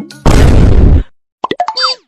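Edited-in sound effects: a loud burst of noise lasting under a second, then a quick string of short clicks and high sounds with sliding pitches.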